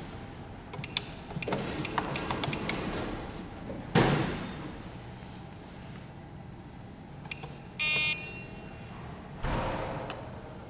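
Stainless-steel keys of a Schindler Miconic 10 destination-dispatch keypad clicking as floor numbers are keyed in, with a sharp thump about four seconds in. Near the end the terminal gives one short electronic beep, about half a second long.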